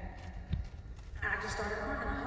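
A single short thump about half a second in, then a person talking through the arena's microphone and loudspeakers, echoing in the large hall.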